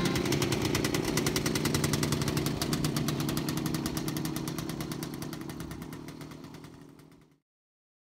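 Film projector running: a rapid, even mechanical clatter over a low motor hum, fading away and stopping about seven seconds in.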